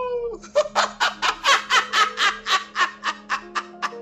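An old man laughing hard into the camera: a long run of quick, rhythmic 'ha' bursts, several a second, after a drawn-out opening laugh note that falls in pitch. A steady low hum runs underneath.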